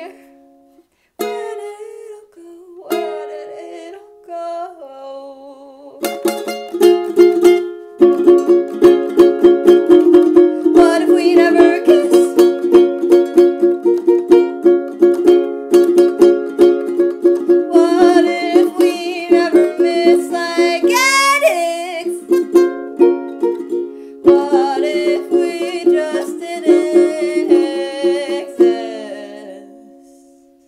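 Hola! ukulele with a capo, played as an instrumental passage: a few sparse picked notes and chords at first, then steady, fast strumming from about eight seconds in.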